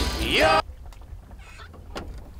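A loud animal call sliding in pitch, like a rooster's crow, cut off sharply about half a second in, then quiet outdoor background.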